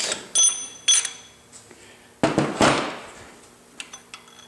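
Metal-on-metal clinks as the oil pump is worked against the engine block: two sharp clinks with a brief ringing in the first second, then a longer rattling clatter about two seconds in. The pump will not seat fully because the lock washer on the oil pump driveshaft is in the way.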